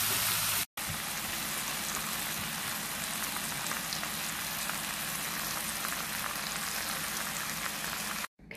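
Pork cutlets and sliced onions sizzling in a cast iron skillet: a steady, fine crackle. The sound cuts out for an instant just under a second in, then carries on evenly.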